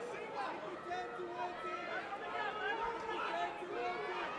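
Live arena crowd at an MMA fight: many overlapping voices shouting and chattering at a steady level, with no single clear speaker.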